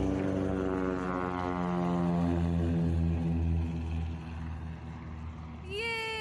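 Small propeller airplane flying past, its engine drone sliding steadily down in pitch and fading as it moves away.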